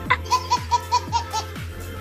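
A woman laughing: about six quick 'ha' bursts that stop about a second and a half in, over background music with a steady beat.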